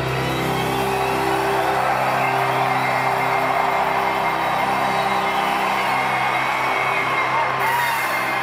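A live rock song's last chord is held on piano and band and slowly thins out, while a crowd cheers and whoops over it.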